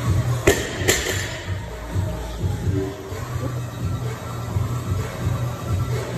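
Background music with a steady beat. Near the start, a barbell loaded with bumper plates is dropped from overhead: two sharp impacts as it hits the rubber gym floor and bounces.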